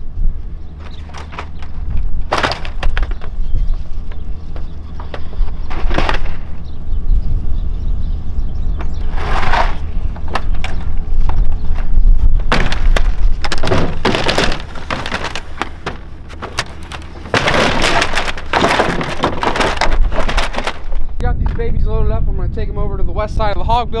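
Slatted wooden fan shutters knocking and clattering as they are handled and stacked into a pickup truck bed: a few single knocks in the first half, then a dense run of clattering bangs in the second half.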